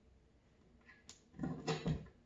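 Hardware being handled against a wooden cabinet door while a door handle is fitted: a click about a second in, then a few louder short knocks and rattles near the end.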